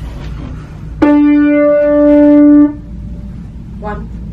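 A single musical note held at one steady pitch for about a second and a half, starting about a second in and cutting off sharply: the starting pitch given to an a cappella group before they sing.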